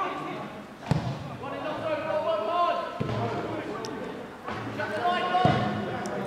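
A football being kicked, three sharp thuds about two seconds apart, with players' voices calling out.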